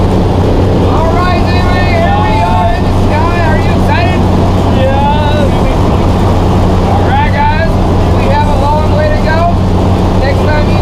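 Steady drone of a skydiving jump plane's engine and propeller heard inside the cabin, with people's voices over it.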